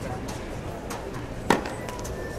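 A tennis ball struck by a racket: one sharp pock about a second and a half in, with a fainter knock about half a second before it.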